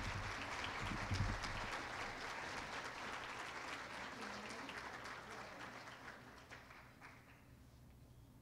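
Audience applauding, dying away over the last couple of seconds.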